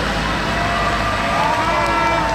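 A convoy of trucks approaching with steady engine and road noise. Several long, held tones lie over it from about half a second in, one rising and growing stronger near the end.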